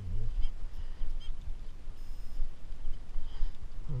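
Handheld metal-detecting pinpointer probing a hole in turf, giving a few brief faint beeps as it closes in on a buried target, over a low rumble.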